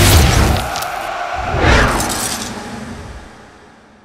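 Television sports graphics sting: music with whoosh and boom sound effects, a swelling whoosh about a second and a half in, then the whole fading out to near silence.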